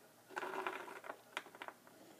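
Plastic miniature being handled and set down on a plaster floor tile: a soft scrape, then a few light clicks of its base on the tile.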